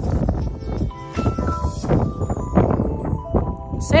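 Background music with a few held notes, over low buffeting wind on the microphone and the dull thuds of a horse's hooves cantering on sand.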